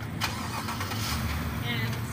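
A police SUV's engine starting and then idling with a low, steady rumble.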